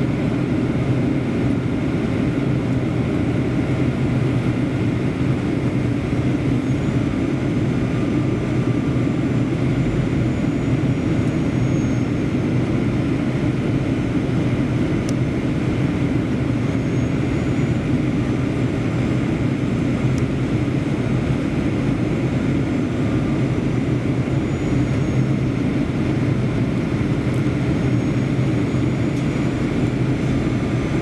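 Steady cabin noise inside a Boeing 737-800 airliner during its descent: the drone of the CFM56 jet engines and the rush of airflow, heavy and low, with a steady low hum.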